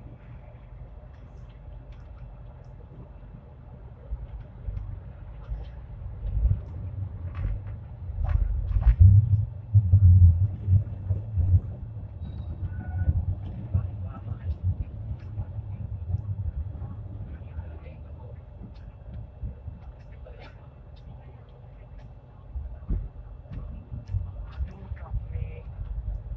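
Hong Kong Light Rail Phase I car running on its tracks, heard from inside: a low rumble of wheels and running gear that swells to its loudest around the middle, with faint clicks.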